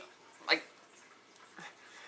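A man's voice saying a single drawn-out word about half a second in, then a quiet room for the rest.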